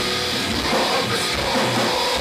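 Hardcore metal band playing live: electric guitars and drum kit, loud and continuous.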